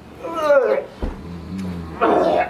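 A person's voice gliding down in pitch, then a low, steady drone for the last second.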